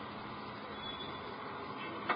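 Steady, faint background hiss with a thin high hum running through it.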